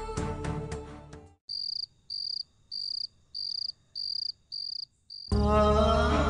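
Background music fades out in the first second, then a cricket chirps in an even, high-pitched rhythm, seven chirps at about one and a half a second. Music with singing starts abruptly near the end.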